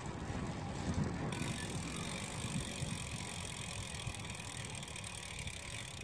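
Road bicycle being ridden on a sealed road: steady tyre and wind noise with low rumble, the hiss growing brighter about a second in.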